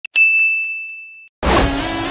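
A single high, bell-like ding sound effect that rings and fades away over about a second. Music starts abruptly about a second and a half in.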